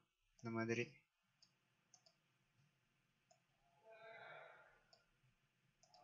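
Faint computer mouse clicks, five or six of them spaced about a second apart, as anchor points are placed with the pen tool in Adobe Illustrator. A short spoken word comes just after the start and a soft breath about four seconds in.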